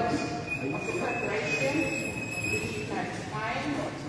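A single voice singing through a church PA, with held notes ringing in the reverberant hall. A thin, steady high whistle sounds under the voice for the first couple of seconds and stops.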